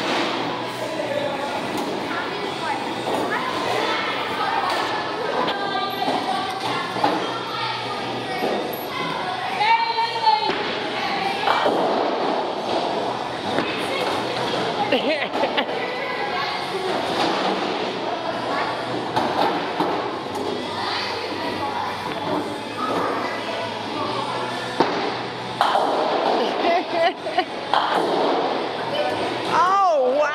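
Busy bowling alley: many voices chattering in a large hall, with bowling balls thudding on the lanes and occasional sharp knocks from the pins.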